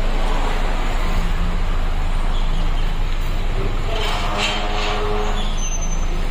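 Hyundai Accent's engine running at low speed as the car rolls slowly forward, a steady low rumble. A short higher-pitched tone joins about four seconds in.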